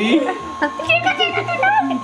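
Wax Vac handheld ear-cleaning vacuum with its small fan motor running in a boy's ear, a thin steady whine under voices and laughter.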